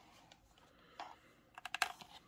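Clear plastic blister pack of a die-cast toy car being handled, its plastic clicking under the fingers: one click about halfway through, then a quick run of crisp clicks near the end.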